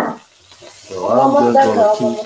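A person's voice from about a second in, over faint sizzling of vegetables frying in an electric skillet.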